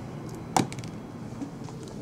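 A small plastic six-sided die rolled onto a tabletop: one sharp click about half a second in as it lands, with a few fainter ticks.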